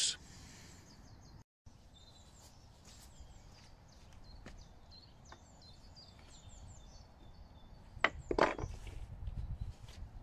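Faint outdoor background with small birds chirping, then a few sharp knocks about eight seconds in.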